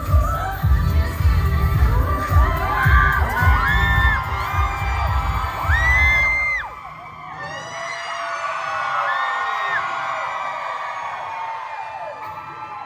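A K-pop dance track played live over a concert PA with a heavy bass beat, fans screaming over it. The music stops about six and a half seconds in, leaving the crowd screaming and cheering, with high shrieks rising and falling.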